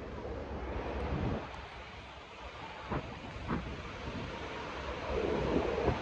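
Outdoor city-street background noise with wind rumbling on the phone's microphone, growing stronger near the end, and two faint clicks about halfway through.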